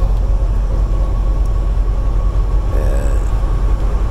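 Steady drone of a semi truck's diesel engine and tyre noise, heard inside the cab at highway speed, with a brief low murmur about three seconds in.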